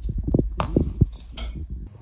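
Dry dog kibble rattling and clattering in a plastic bowl: a run of irregular knocks and rattles over a low handling rumble, stopping suddenly near the end.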